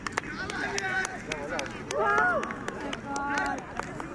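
Men's voices calling and talking across an open cricket field in short bursts, with irregular sharp clicks throughout.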